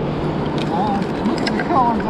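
Steady wind rushing and buffeting on the microphone on an open beach, a constant noise with a rumbling low end.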